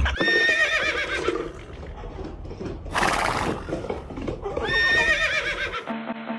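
A grey tabby cat giving two long yowls that waver up and down in pitch, with a short hissing burst between them.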